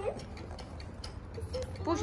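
A few faint ticks over a steady low hum, with a child's voice briefly at the start and again near the end.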